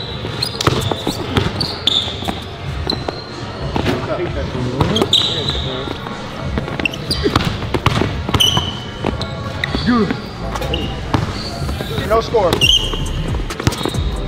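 A basketball being dribbled hard on a hardwood gym floor in a one-on-one drill, with sneakers squeaking sharply as the players cut.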